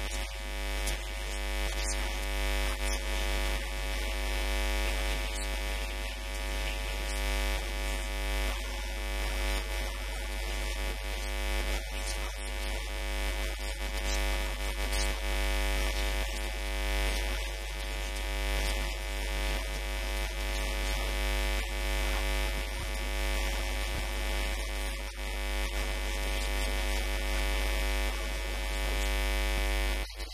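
Steady electrical mains hum with a dense buzz of overtones, picked up as interference by the recording microphone.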